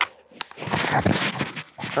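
Handling noise from a shooter's pistol and tactical gear: a sharp click at the start, another small click, then about a second of rustling and scuffing.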